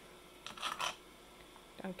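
A short clatter and rustle of plastic about half a second in, lasting under half a second: a plastic petri dish lid being handled and set down on a plastic tray.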